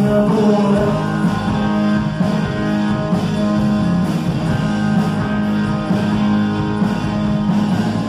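A rock band playing live, with electric guitars sounding over drums.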